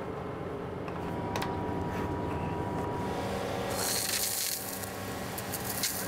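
The fire tanker's engine and pump run with a steady hum. About four seconds in, the hose nozzle is opened and a jet of water sprays out with a loud hiss.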